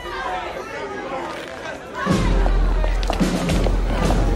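Murmur of crowd voices from a film scene, then music with deep bass and a sharp beat comes in loudly about two seconds in.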